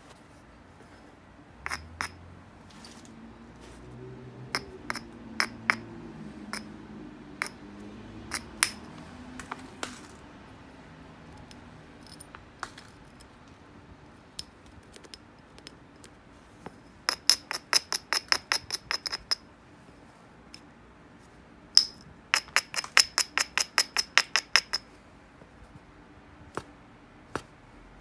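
A small hammerstone worked against the edge of an obsidian biface, giving sharp, glassy clicks of stone on volcanic glass. Scattered single clicks come in the first half, then two quick runs of about six clicks a second in the second half, as the edge is abraded and nibbled.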